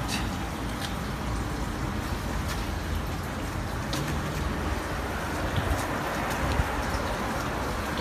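Steady background noise, strongest in the low range, with a few faint clicks.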